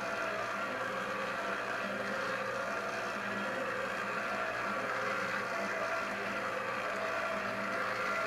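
Planetary stand mixer running steadily, its dough hook kneading a 73%-hydration ciabatta dough at the end of kneading, as the dough strengthens.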